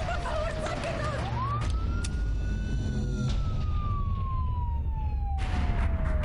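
Police car siren wailing in a slow cycle. Its pitch falls, sweeps up sharply about a second in, holds briefly, then falls slowly through the rest, with a low rumble beneath it. A burst of hiss-like noise joins near the end.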